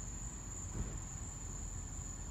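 Night insects, crickets, trilling in one steady high-pitched chorus over a faint low rumble.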